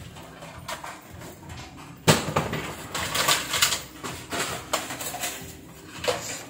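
Clicks and knocks of hard objects being handled and set down on a wooden table, with a sharp knock about two seconds in and a run of rattling clicks near the middle.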